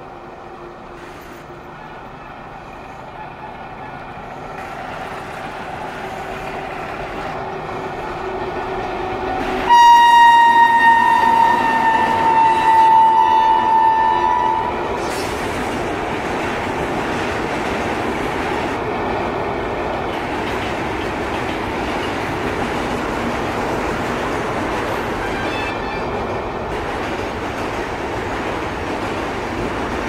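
Electric locomotive horn of an Indian passenger train: a few faint short notes as the train approaches, then one loud horn blast about ten seconds in, lasting about five seconds and falling slightly in pitch as it passes. After that comes the steady rumble and clickety-clack of the coaches rolling over a steel truss bridge, with a couple more faint horn notes.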